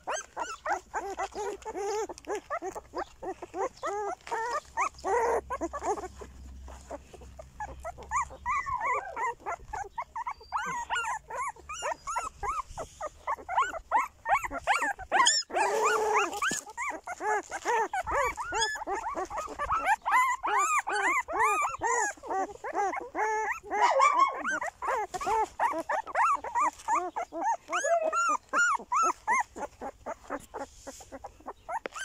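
A litter of young shepherd puppies whimpering and squealing: many short, high cries that rise and fall, overlapping almost without a break. A brief noisy burst comes about halfway through.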